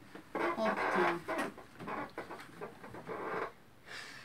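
A person's voice talking indistinctly in a small room, in short broken phrases, trailing off shortly before the end.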